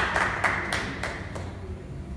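A small group of people applauding, the claps thinning out and stopping about a second and a half in.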